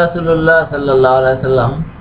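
A man's voice chanting a recitation in held, level notes, breaking off shortly before the end.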